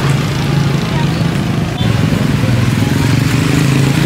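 Small motorcycle engines running close by in street traffic: a steady low drone, with a second, higher engine note joining about halfway through.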